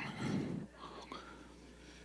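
Faint, distant voices of the congregation murmuring a reply, mostly in the first second, heard off the preacher's microphone.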